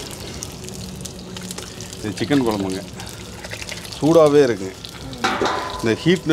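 Short bits of a person's voice, twice, over a steady low hum and hiss, with a brief rushing noise near the end.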